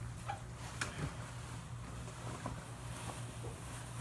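Faint handling of wet laundry in a bathtub as a maxi skirt is lifted from the pile: a few soft ticks and rustles over a low, steady hum.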